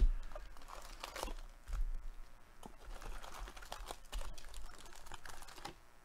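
Foil-wrapped jumbo packs of 2022 Bowman Baseball cards being lifted out of their box and handled: irregular crinkles and light taps, loudest at the start and about a second in.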